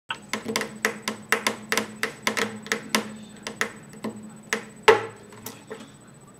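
Sharp percussive taps on an acoustic guitar, about four a second and evenly spaced, then slowing and turning irregular after about three seconds, with the loudest tap near the end.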